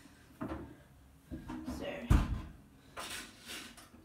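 Kitchen knocks while an electric oven is being switched on and set to 180: a light knock near the start, a heavy thump about two seconds in, and two short scrapes near the end.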